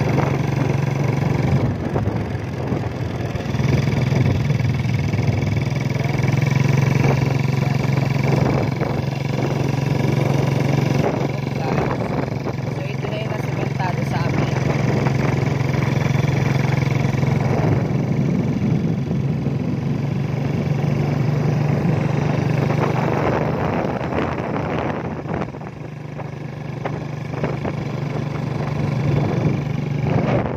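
Small motorcycle engine running steadily while being ridden, a constant low hum with road and air noise.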